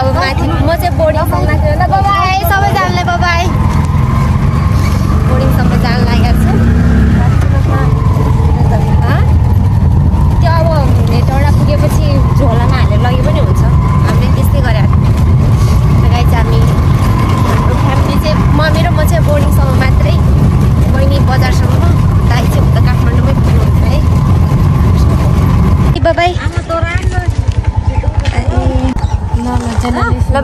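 Steady engine and road rumble of a moving vehicle heard from inside its canopy-covered back, with people talking over it. The rumble gives way near the end.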